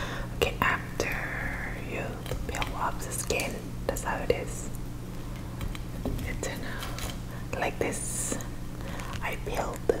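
Soft close-up whispering with scattered small clicks and taps, over a steady low hum.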